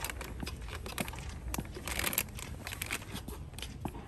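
Crinkly plastic wrapper of a small bath bomb package crackling as it is handled and turned over, on and off, busiest around the middle.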